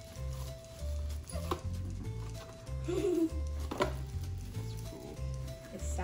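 Background music: a steady, regularly changing bass line under held melody notes, with a couple of sharp clicks about a second and a half in and just before four seconds.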